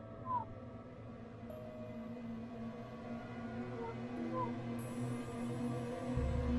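Background music of low, sustained held tones, with a cat meowing briefly twice: a short meow about a third of a second in and a fainter one a little after four seconds in.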